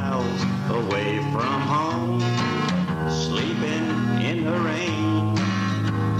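Old-time country music played on acoustic guitar and bass, with a lead melody line whose notes bend and slide.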